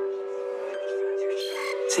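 Boom-bap hip-hop instrumental at a drum break: the drums drop out and only a held melodic sample chord plays, with a few faint higher notes over it. The drums come back in at the very end.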